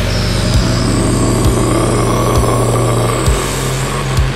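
Heavy metal music in a slower passage: a distorted low chord held under a dense wash, with a single drum hit about once a second.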